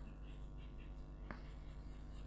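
Chalk writing on a chalkboard: faint scratching strokes with a sharper tap of the chalk a little past halfway.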